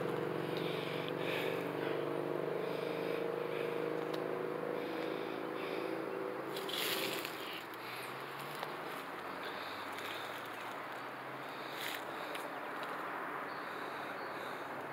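A motor vehicle's engine hum, steady and then fading out about halfway through, with a brief rustle around the same time, followed by faint outdoor background.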